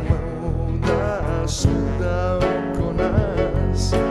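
Live song: a man sings to his own strummed acoustic guitar, over steady electric bass notes.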